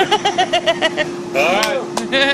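A person laughing in quick, rhythmic bursts, then a single rising-and-falling whoop, over a steady hum.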